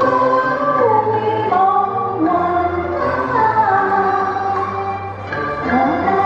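A woman singing a Cantonese opera song into a microphone over instrumental accompaniment, her melody line sliding between held notes.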